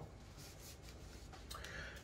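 Faint rustling and rubbing of a wrapped chocolate bar being handled on a wooden table, a little louder near the end, over quiet room tone.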